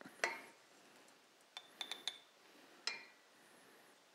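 A metal spoon clinking against a stainless steel bowl and a small glass jar as dry furikake is spooned into the jar. The clinks are light and scattered: one about a quarter second in, a quick cluster around two seconds with a brief ring, and one more near three seconds.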